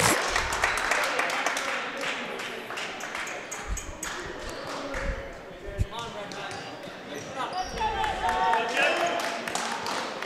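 Volleyball bounced a few times on a hardwood gym floor, separate dull thuds, amid the chatter of players and spectators.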